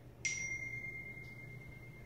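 Smartphone text-message alert: a single bell-like chime struck about a quarter second in, its one clear tone ringing out slowly.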